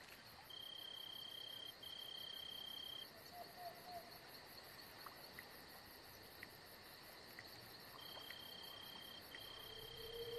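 Faint insect chorus with crickets: a steady high buzz under pairs of long, even, high trills, one pair near the start and another near the end.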